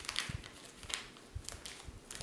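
Faint clicks, taps and light rustling from hands handling fly-tying tools and materials at a tying vise, with a few short sharp ticks spread through.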